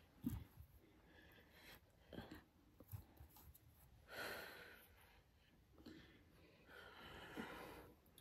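Faint breathing of a woman straining to hold a forearm plank, with two longer, hissing exhalations, one about four seconds in and one near the end.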